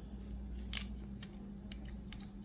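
A few light clicks and taps from a die-cast model car being turned over in the hands, the loudest a little under a second in, over a steady low hum.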